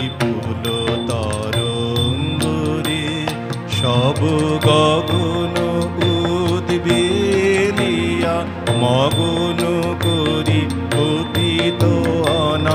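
A man singing a slow, ornamented Indian song with instrumental accompaniment. His voice holds long notes that waver and bend, over a steady instrumental backing with light percussive strokes.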